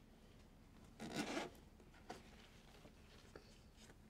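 Things being handled inside a low wooden cupboard: a short rustling scrape about a second in, then a light click, with faint ticks later, in a quiet room.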